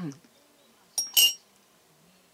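A metal teaspoon clinks against a ceramic soup mug: a light tick about a second in, then one loud, brief ringing clink. A short hum from her voice comes at the very start.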